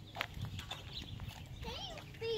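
A toddler's light footsteps on a concrete curb, a few sharp taps early on, followed near the end by a short high, wavering vocal sound from a child.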